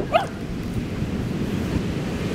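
Heavy storm surf breaking on the beach, with wind rumbling on the microphone. One short high-pitched cry right at the start.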